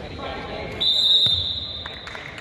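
Referee's whistle blown in one long, steady, high blast of about a second, starting a little under a second in, over the chatter of a gym crowd.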